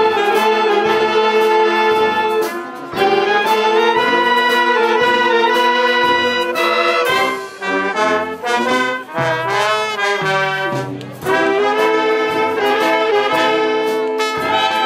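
A wind band of flutes, clarinets, saxophones, trumpets, French horn and tuba plays a piece together in sustained full chords. The sound breaks off briefly about two and a half seconds in. A lighter passage with moving low notes follows in the middle, and the full chords return about three seconds before the end.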